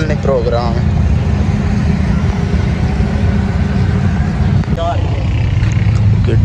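A steady, loud low rumble throughout, with a fainter hiss above it.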